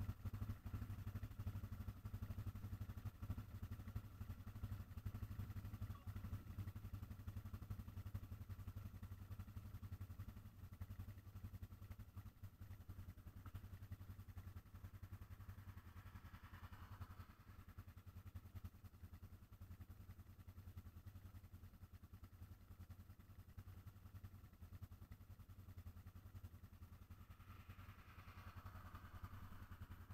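ATV engines idling low and steady while the machines sit stopped. A rushing sound swells and fades about halfway through and again near the end.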